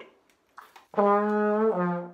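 A plastic trombone plays one held note, the flat third A-flat over an F major chord, that slides up toward A near the end: a blue note bent toward the next step.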